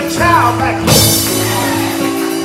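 Church band music, held keyboard chords with drums, behind a man's voice chanting in song for the first half-second: a preacher singing out the close of his sermon over the band.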